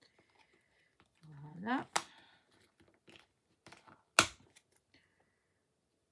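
Small hard clicks and ticks as plastic rhinestone storage boxes are handled. Two sharp clicks stand out, one about two seconds in and a louder one about four seconds in. Just before the first comes a short rising hum from a voice.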